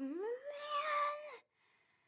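A child's drawn-out, whining "Oh, man!" of disappointment. The voice rises in pitch, holds, and breaks off about a second and a half in.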